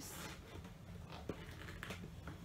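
Faint rustling and a few light taps and clicks of hands handling a cardboard product box.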